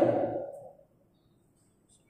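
A man's voice finishing a word, fading out within the first second, followed by a pause of near silence.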